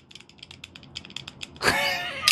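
Extended blade of a cheap 'Lightning' OTF knife rattling in its track as it is wiggled by hand, giving rapid clicking at about ten a second. The rattle is the sign of loose tolerances and blade play. A short laugh comes near the end.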